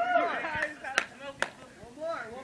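A young man's voice calling out, then two sharp smacks about half a second apart.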